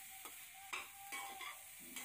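Pork pieces sizzling faintly as they fry in their own rendered fat in a metal pan, with no oil added. A slotted metal spoon scrapes and clicks against the pan several times as the pieces are stirred.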